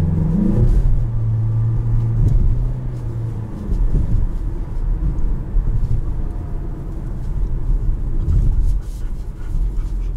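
The 2021 Mazda CX-5's 2.5-litre turbocharged four-cylinder heard from inside the cabin, its revs rising under acceleration in the first second. A steady low engine drone follows until about three and a half seconds in, then gives way to low road rumble.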